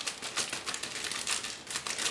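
Clear plastic bag holding model-kit sprues crinkling as it is handled, a dense run of quick crackles.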